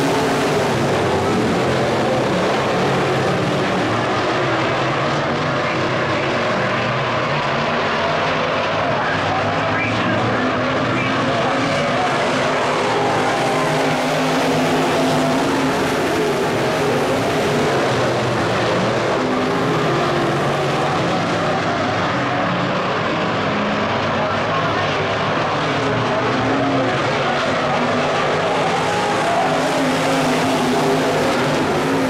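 A pack of IMCA Modified dirt-track race cars running their V8 engines at speed around the oval, a loud, continuous drone of many engines whose pitch shifts as the cars lap.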